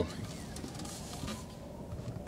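Quiet, steady cabin noise of a Nissan Leaf electric car pulling away at low speed, with no engine sound.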